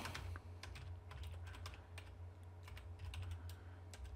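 Computer keyboard typing: quiet, irregular key clicks as a file name is typed, over a low steady hum.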